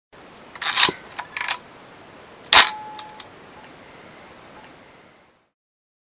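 Two short bursts of noise and a single sharp click over a steady hiss, the hiss stopping about five seconds in.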